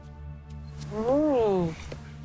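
A cat's single drawn-out meow, rising and then falling in pitch, about a second in, over steady background music.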